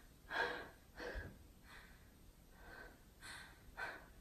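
A woman breathing hard, out of breath from dancing: about six short breaths in and out, the first the loudest.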